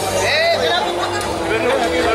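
A crowd talking over one another, with music playing underneath.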